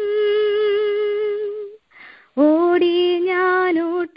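A woman sings a Malayalam devotional song to Jesus, unaccompanied. She holds one long note, breaks for a breath about two seconds in, then starts the next phrase. The sound is thin and narrow, as heard over a telephone line.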